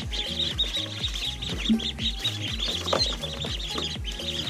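A crowd of Khaki Campbell ducklings peeping continuously in rapid, high chirps, over background music with a steady bass beat.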